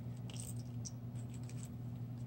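Faint light clicks and rustling of small paper and plastic craft embellishments and stickers being picked up and shifted by hand, over a steady low hum.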